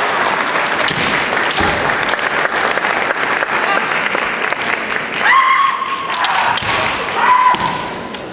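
Kendo fencers' kiai: long, held shouts, two of them in the second half, about two seconds apart. Around them, bamboo shinai clack and feet stamp on the wooden floor in many sharp knocks.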